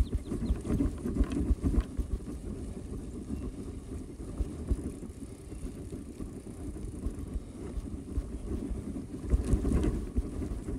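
A mountain bike rolling over a grassy trail: a low rumble with irregular knocks and rattles from the bike over bumps, under wind noise on the microphone. It is rougher near the start and again near the end.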